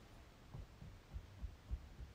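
A run of dull low thumps, about three a second, starting about half a second in, over quiet room tone.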